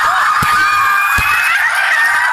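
Several women laughing and shrieking loudly together, with two short low thumps in the middle.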